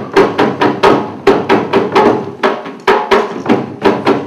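A drum beaten in a steady, driving rhythm of about four sharp strokes a second, each stroke ringing briefly with a low pitched tone.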